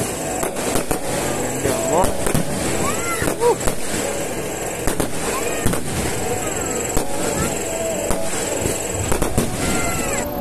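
Aerial fireworks display: a rapid, irregular string of shell bursts and crackling bangs, with whistling tones rising and falling between them.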